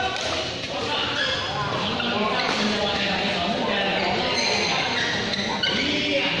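Badminton doubles rally in a large echoing hall: a sharp racket strike on the shuttlecock at the start and another near the end, with voices carrying throughout.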